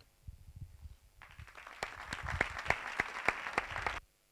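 Audience applauding: a few faint low knocks, then clapping that starts about a second in, builds, and cuts off suddenly at the end.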